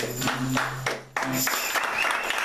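A small audience clapping as the piece ends: a few scattered claps, a brief lull about a second in, then fuller applause.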